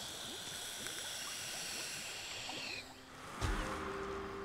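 Electronic cigarette (vape) being drawn on: a steady sizzling hiss from the heating coil, with a faint crackle, for about three seconds. A low thump and a breathy whoosh of exhaled vapour follow near the end, as music comes in.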